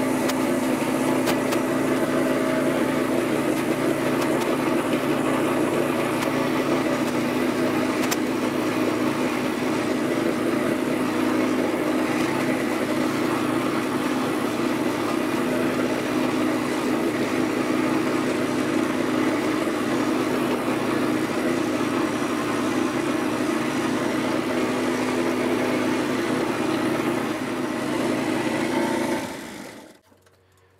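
Gas engine of a Yardmax YD4103 power wheelbarrow running steadily as it drives fully loaded with about 660 lb of gravel and concrete bags. The sound fades out near the end.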